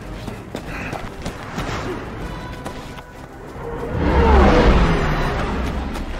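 Film soundtrack mix of music over blizzard wind. About three and a half seconds in, a loud, deep rumbling swell builds with several falling tones, peaks, and fades.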